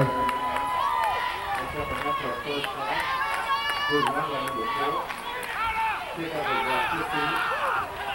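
Crowd noise at a youth football game: many overlapping voices of spectators and young players calling and shouting, several of them high-pitched, over a steady background hubbub.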